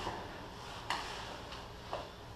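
Grappling on a training mat: three short, sharp taps or slaps about a second apart, over a steady background hiss.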